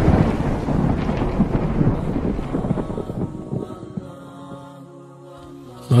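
Thunder sound effect: a crash that rolls and fades over several seconds. A held musical drone of steady tones comes through as it dies away, about halfway in.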